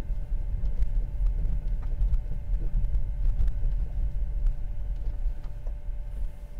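Low, steady rumble of a Tesla Model 3's stock all-season tyres rolling slowly over snow-covered road, heard inside the cabin, with a faint steady tone above it.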